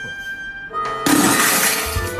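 Glass shattering: a drinking glass dropped from a height smashes the glass top of a garden table, a sudden crash of breaking glass about a second in that lasts about a second. Background music plays underneath.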